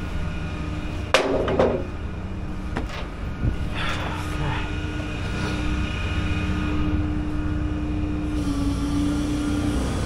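Rollback tow truck's engine running steadily, its hum shifting slightly in pitch near the end. A loud knock comes about a second in, followed by a few lighter knocks.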